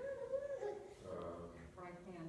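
Indistinct murmured voice, too low or unclear for any words to be made out.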